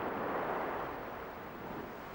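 Ocean surf washing onto a sandy beach: a steady rush that swells early on and then slowly eases off.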